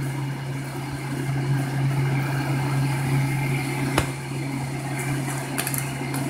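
Steady low mechanical hum with a faint fluttering whir over it, and a single sharp click about four seconds in.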